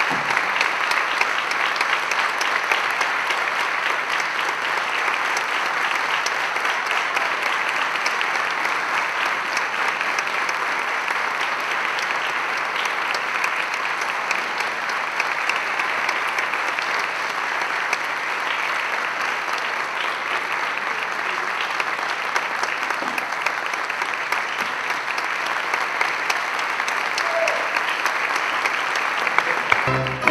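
Theatre audience applauding steadily for the cast's curtain call, a dense, unbroken clapping that holds at the same level throughout.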